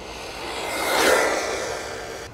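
MJX Hyper Go brushless RC car passing by at full speed on a LiPo battery. Its motor whine and tyre noise rise to a peak about a second in, then fade as it goes away.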